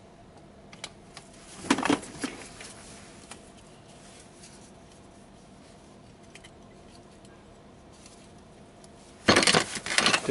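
Metal parts and tools clinking on a workbench as a differential carrier with its ring gear is handled. There are a few light clicks and a sharper clink about two seconds in, then a louder metallic clatter near the end.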